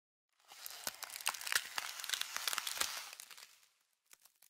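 Crackling, rustling sound effect over the opening title animation, dense with sharp clicks; it fades in about half a second in and dies away shortly before the title card appears.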